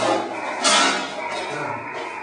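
Receiver audio from an amateur radio transceiver listening between calls on a meteor scatter band: a steady hiss with a few faint steady tones, and a brief louder rush of hiss a little over half a second in.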